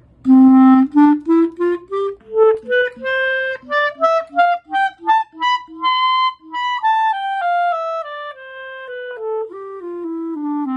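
A clarinet playing a scale: separate notes stepping up about two octaves to a high note held in the middle, then stepping back down to the starting note.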